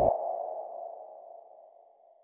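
A single ping-like editing sound effect: a low thud, with a ringing mid-pitched tone that fades away over about two seconds.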